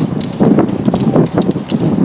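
Pole tips of roller skiers clicking on asphalt in quick, irregular succession, over a low rumble.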